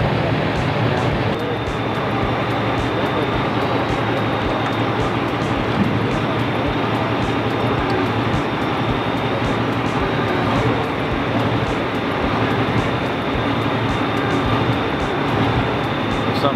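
A tow truck's engine and winch running steadily as the cable drags a sunken car up out of the river, with a faint steady high whine from about a second and a half in.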